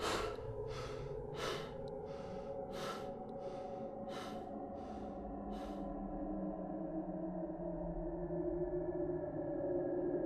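Footsteps on dry grass, about three every two seconds, stopping about six seconds in. Under them runs a low sustained music drone whose tones rise and grow louder toward the end.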